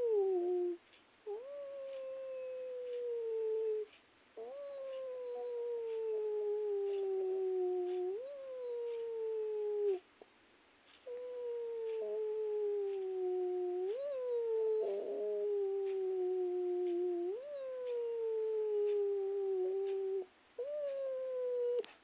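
An animal's long wailing cries, one after another. Each lasts a few seconds, swoops up quickly and then slides slowly down in pitch, with short breaks between some of them.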